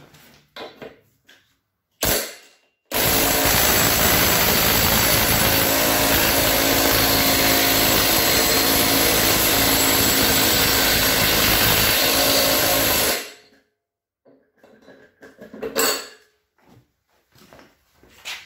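Cordless impact driver on the flywheel nut of a seized Tecumseh lawnmower engine, trying to spin it over: a short burst about two seconds in, then steady hammering for about ten seconds that stops abruptly. The engine is seized from being run with sand in place of oil.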